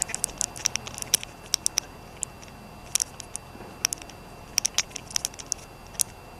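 Irregular small, sharp clicks, some in quick clusters, over the steady faint hum of a quiet conference room.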